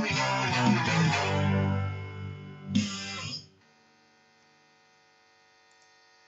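Electric guitar playing the last bars of a punk-rock song: chords ringing, then a final strummed chord about three seconds in that is cut off sharply half a second later. Near silence follows, with only a faint steady hum.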